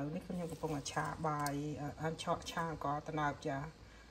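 Speech: a woman talking continuously.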